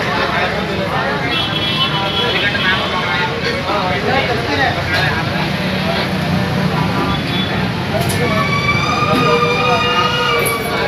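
Overlapping voices of several people talking at once over a steady low hum. From about eight seconds in, a long held pitched tone with a siren-like quality sounds over the chatter.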